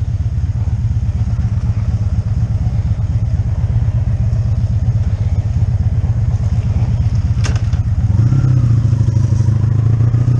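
1985 Honda V65 Sabre's 1100cc V4 engine running at low revs. It gets a little louder near the end as the bike pulls away. A single sharp click comes about three-quarters of the way through.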